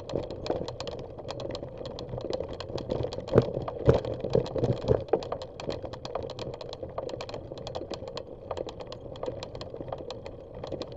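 Bicycle rolling over a rough dirt trail: a steady run of rapid, irregular clicks and rattles, with a cluster of heavier knocks about three to five seconds in.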